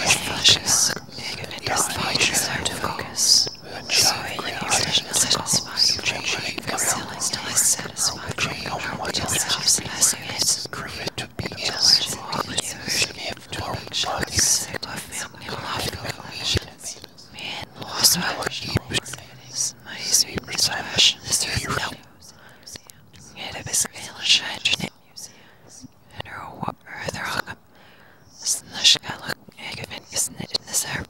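Whispered voices, dense and overlapping at first, thinning to sparser, separate whispers about two-thirds of the way through.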